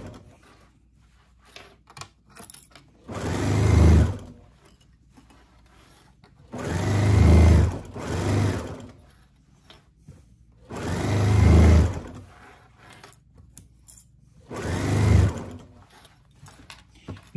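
Domestic sewing machine stitching the waistband casing of a pair of shorts in four short runs of a second or two each, with pauses between them while the fabric is repositioned. Each run swells in loudness and then stops.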